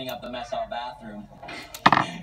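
Faint voices from a television, then a single sharp knock near the end.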